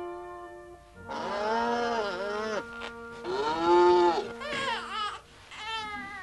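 A newborn baby crying in several long wails, each rising and falling in pitch, over soft sustained film music whose held chord fades out about a second in.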